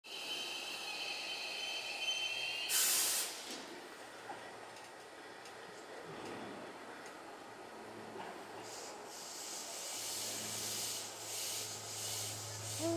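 Hankyu 1000 series electric train approaching the platform. Its rushing rolling noise and a steady low hum build over the last few seconds. Earlier there are high steady tones, then a short loud hiss about three seconds in.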